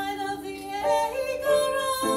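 A voice singing a song over musical accompaniment, holding long notes that step up in pitch about a second in.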